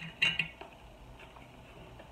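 A couple of quick metallic clinks in the first half-second as a used metal canning lid is picked up against other lids or jars, followed by faint handling.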